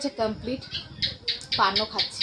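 Speech only: a woman talking in short phrases with breathy, hissing consonants between them.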